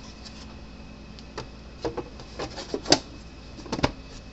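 Plastic fence-charger case being handled and pressed together, giving a run of irregular clicks and knocks; the sharpest comes about three seconds in, with a close pair just before the end.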